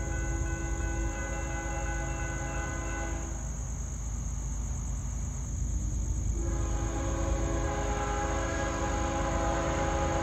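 Freight locomotive's air horn: a long blast ends about three seconds in, and after a pause of about three seconds a second long blast starts, as the train approaches and sounds for the grade crossing. A steady low rumble from the train and chirping crickets run underneath.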